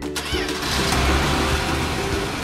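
Cartoon sound effect of a food truck driving past: an engine rumble with a rushing whoosh that swells toward the middle, over background music.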